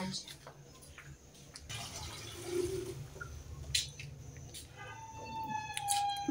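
A short, soft pour of water, with a couple of light knocks after it, then a steady held note near the end.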